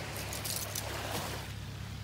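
Loose cockle shells clicking and crunching as they are disturbed, with a few small crackles in the first second or so, over a steady background rush.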